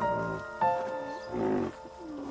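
Background music with held keyboard notes changing every half second or so, with short low animal calls mixed in underneath, about half a second and a second and a half in.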